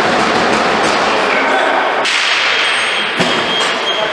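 Busy ball hockey rink noise, with one sharp thud a little after three seconds in.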